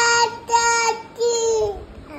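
A toddler singing, holding three long high notes in turn, the last one sliding down in pitch.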